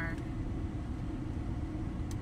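Steady low rumble of a car heard inside its cabin.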